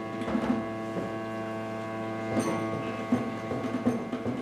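Renaissance ensemble playing a tarantella: plucked lute over steady held bowed notes from a viola da gamba. The plucked notes thin out for a moment and come back with sharper struck accents about two and a half seconds in.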